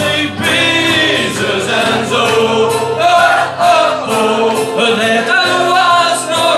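A man singing a song live with acoustic guitar accompaniment, his melody continuous over the steady strummed chords.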